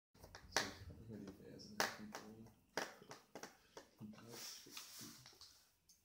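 Sharp clicks and taps of a cross-head screwdriver working small screws out of a laptop LCD panel's metal mounting frame, a handful of separate ticks about a second apart.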